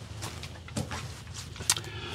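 Handling noise: rustling and a few light clicks and knocks as a rifle is picked up from a wooden shooting bench, over a low rumble.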